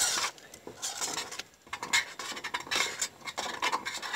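A metal spoon stirring thick potato soup in a stainless steel pot, scraping and lightly clinking against the pot's bottom and sides in irregular strokes, with a brief pause about one and a half seconds in.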